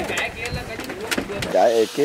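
A low rumbling noise with a few sharp clicks, then a man's voice starts speaking near the end.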